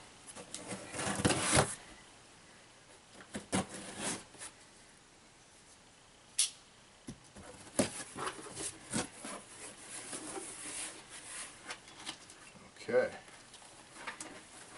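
Cardboard shipping box being opened by hand: intermittent rustles, scrapes and knocks as the flaps are pulled apart, with a sharp click about six seconds in.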